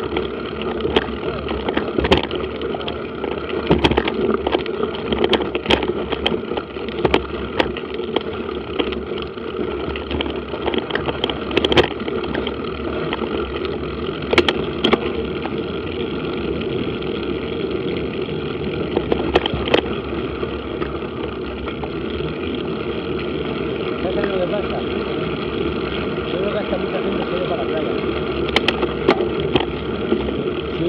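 Mountain bike rolling over a dirt and gravel track, picked up by a bike-mounted camera: a steady rumble of tyres and wind with frequent knocks and rattles from bumps during the first half, running smoother after that.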